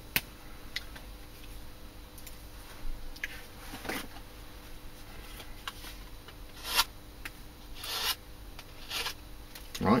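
Short scraping strokes of a hand tool shaping a hardwood knife handle, about seven of them at uneven intervals, over a faint steady hum.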